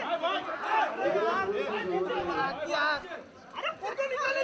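A crowd of press photographers talking and calling out over one another, many voices at once, dipping briefly a little after three seconds in.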